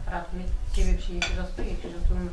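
Plates and cutlery clinking on a laden table, with a sharp clink a little after a second in, under a voice talking in the background.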